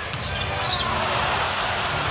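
Basketball game sound from the arena: steady crowd noise with a basketball bouncing on the hardwood court and a brief high sneaker squeak a little under a second in.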